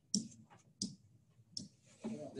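Three short, sharp clicks about two-thirds of a second apart, made while an arrow is drawn onto a digital slide.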